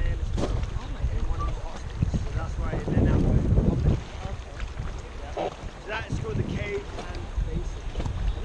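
Wind buffeting the microphone over the rush of a fast, choppy river under a whitewater raft, with a strong gust about three seconds in.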